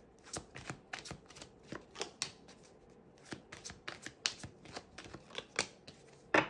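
A deck of oracle cards being shuffled and handled, with cards laid down onto a wooden desk: a run of quick, irregular papery clicks and slaps, several a second.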